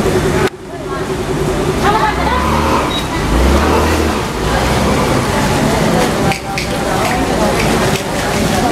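Steady rush of the swollen, flooding river, with people's voices talking over it.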